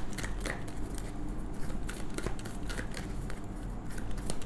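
A deck of tarot cards being shuffled and handled by hand: a run of irregular, quick papery clicks and snaps as the cards slide and tap together.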